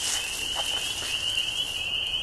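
A large chorus of spring peepers calling at once, their high peeps blending into one steady, shrill ring.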